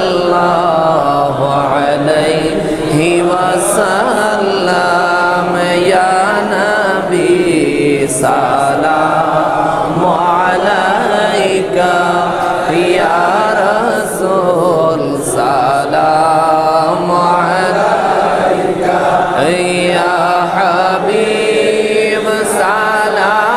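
A man's voice chanting a melodic Islamic devotional salutation to the Prophet (durood and salam) over a microphone, a continuous sung line held on long, wavering notes.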